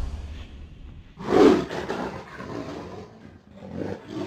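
A tiger roar sound effect: one loud roar about a second in that tails off slowly, and a second, shorter roar beginning near the end.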